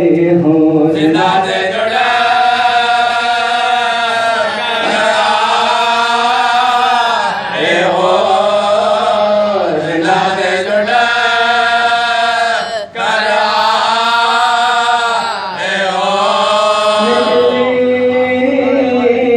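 A man chanting a noha, a Shia Urdu lament, unaccompanied into a microphone, in long drawn-out melodic phrases with short breaks every few seconds.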